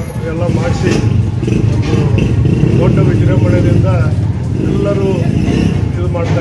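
A motor vehicle engine running close by under a man's speech, a low rapid pulsing that grows louder through the middle and eases near the end.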